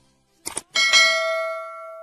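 Subscribe-button animation sound effect: a mouse click about half a second in, then a bright notification-bell ding that rings on and fades away.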